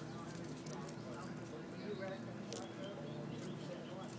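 Indistinct voices talking, over a steady low hum, with a couple of sharp clicks: one at the start and one about two and a half seconds in.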